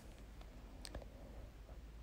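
Quiet room tone with one faint, short click just under a second in.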